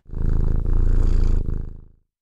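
Domestic cat purring loudly, a low, rapidly pulsing rumble in about three breaths that fades out near the end.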